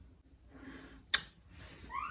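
Mostly quiet breathing close to the microphone, with a single short kiss smack about a second in; right at the end a baby starts a high, rising whine of protest at being kissed.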